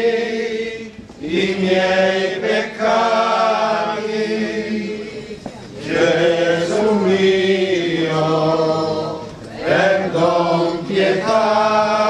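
A group of men chanting a slow devotional hymn together in long held phrases, with short pauses for breath between them.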